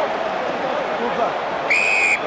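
Referee's whistle giving one short, steady blast near the end, over continuous stadium crowd noise and shouting voices.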